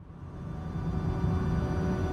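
Low, steady rumble of a car driving, heard from inside the cabin, fading in from silence and growing louder.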